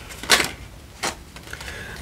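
Tarot cards being handled at the deck: two short, crisp card sounds, one about a third of a second in and a fainter one about a second in.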